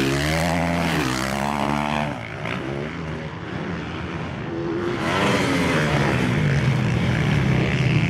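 450cc motocross bikes racing, their engines revving up and down through the gears. The sound eases off about two seconds in and swells again about five seconds in as bikes come closer.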